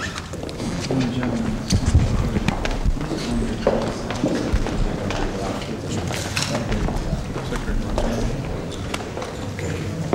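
Indistinct murmur of several people talking in a room, no words clear, with scattered light clicks.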